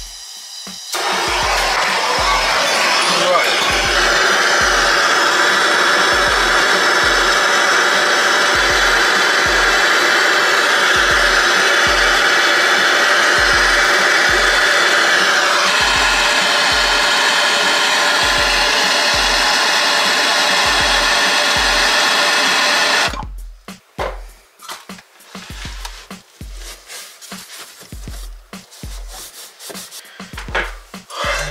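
Gas blowtorch flame burning loud and steady while heating fluxed copper pipe joints to solder them. It lights about a second in and shuts off sharply after about 23 seconds.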